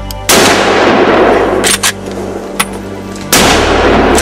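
Two gunshots from a hunting gun about three seconds apart, the first just after the start, each followed by a rolling echo that dies away over about a second. Music plays underneath.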